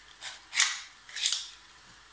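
3D-printed plastic break-action pistol being opened and snapped shut in the hands. It gives three short rasping plastic clicks, the last two louder.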